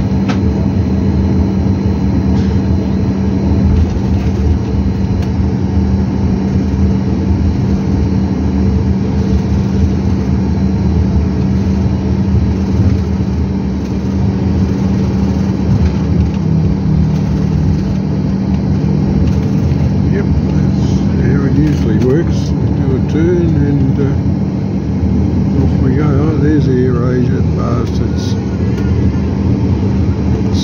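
Steady engine drone inside an airliner cabin while the plane taxis, with a constant low hum running under it. Muffled voices come in over the drone in the second half.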